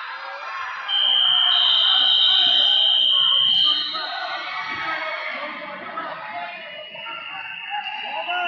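A loud, steady, high-pitched electronic buzzer sounds for about three seconds, starting about a second in, over the murmur of voices in a large hall.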